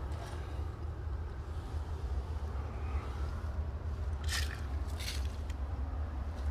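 Two short footsteps crunching on gravel and dry leaves, about four and five seconds in, over a steady low rumble.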